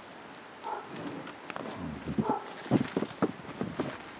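A baby's short wordless vocal sounds, with a quick run of crisp crunching clicks of snow that grows denser and louder in the second half.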